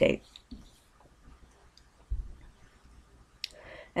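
Faint computer mouse clicks, the sharpest one just before the end, with a soft low thump about halfway through.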